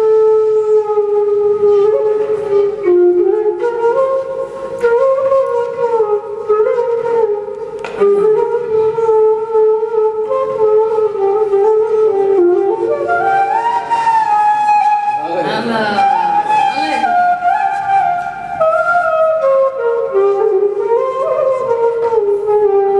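Flute playing a slow, sliding, ornamented flamenco melody over guitar accompaniment in a live band. About two-thirds of the way through comes a quick flourish of rapid notes.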